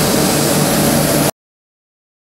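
Municipal street sweeper truck running, a loud steady machine noise with a low hum under a hiss. It cuts off abruptly a little over a second in, leaving silence.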